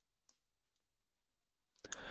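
Near silence, with a faint click about a third of a second in and a few soft clicks near the end.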